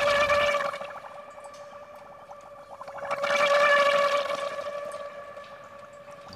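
Aquaphon, a large water-filled glass bowl, sounding a sustained tone with overtones and a fast fluttering wobble. It swells twice, just after the start and again about three seconds in, then fades away.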